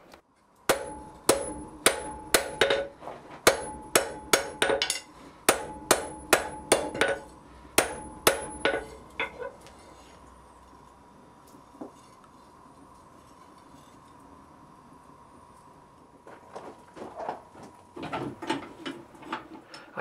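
Hand hammer striking a red-hot iron bar on an anvil to forge a bend: about twenty blows at two or three a second, each with a ringing note from the anvil, stopping about nine seconds in. Near the end come lighter, quicker knocks.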